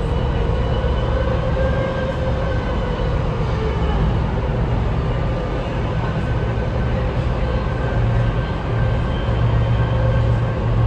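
Inside a BART Legacy Fleet rapid-transit car as the train runs: a steady rumble with several faint, steady whining tones above it.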